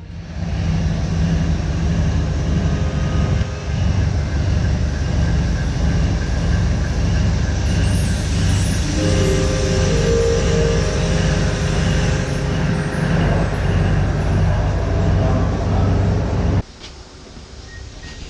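Diesel train engine running with a loud, deep, steady rumble; a steady tone is held for a few seconds in the middle. Near the end the sound drops suddenly to a much quieter rumble.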